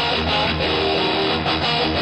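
Hard rock music led by strummed guitar, playing at a steady loud level.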